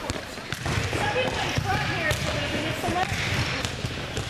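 Gym court sounds: volleyballs being hit and bouncing on the hard court floor, a sharp smack or thump every so often, over indistinct background voices of players talking.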